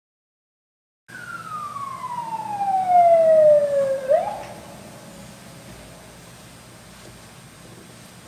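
Emergency vehicle siren starting about a second in: one long falling wail, then a short rising sweep near the four-second mark before it drops away to a faint steady background.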